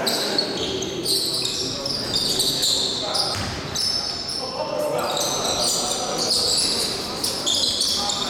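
Basketball shoes squeaking in many short high chirps on the gym floor during live play, with a ball bouncing and players' voices calling out.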